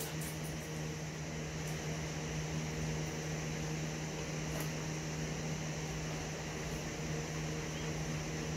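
A steady low machine hum, like a fan or other running appliance, holding one constant low tone, with a few faint ticks.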